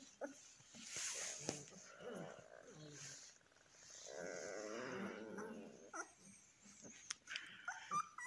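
Newborn Kangal puppies crying as they squirm together in a pile: short high cries, with a longer wavering whine about halfway through.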